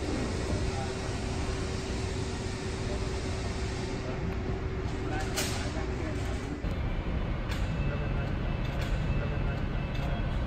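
Ambience of a large car workshop: a steady hum over a noisy background, with indistinct distant voices and a sharp click about halfway through.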